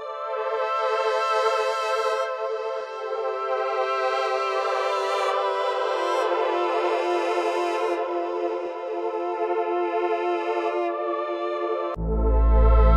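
Software synth pad (Arturia Jup-8 V3, a Jupiter-8 emulation) playing a slow progression of sustained chords from an FL Studio piano roll, the chords changing every few seconds, with no drums or bass under it.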